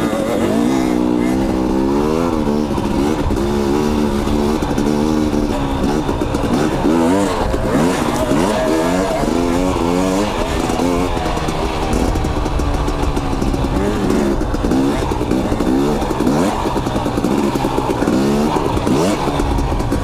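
KTM 250 XC two-stroke dirt bike engine under way, its pitch rising and falling with the throttle, with wind rumble on the microphone.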